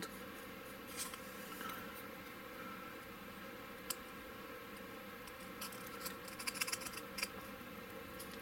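Round diamond needle file scraping inside the turret hole of a plastic BRDM-2 model hull, widening it to seat a 5 mm magnet. The scraping is faint, with a short run of quick scratchy strokes in the second half and a sharp click about four seconds in.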